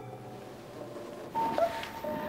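Quiet room tone, then about two-thirds of the way through a short rustle as two people sit down on a leather sofa, and a steady held music note comes in.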